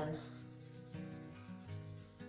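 Soft pastel stick rubbed back and forth across velour pastel paper, a faint dry rubbing, over quiet background music with slowly changing held chords.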